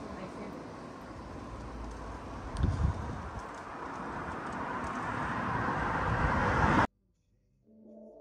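Outdoor street ambience with a low thump about two and a half seconds in, then a rushing noise that swells steadily louder. It cuts off abruptly about seven seconds in, and music fades in just before the end.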